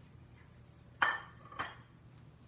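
Two sharp clinks of hard kitchenware about half a second apart, the first louder, each ringing briefly.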